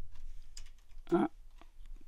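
Faint, scattered clicking of computer keys as presentation slides are paged through.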